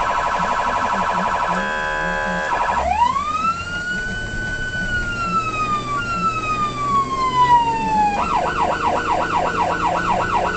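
Federal Signal Omega 90 electronic siren on a responding fire apparatus: a fast warble, a steady horn tone of about a second, then a wail that rises and slowly falls, switching to a quick yelp of about three cycles a second near the end.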